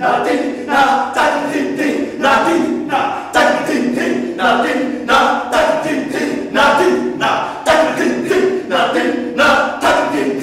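Several men's voices shouting out a rhythm in unison, unaccompanied, in sharp repeated vocal beats about twice a second.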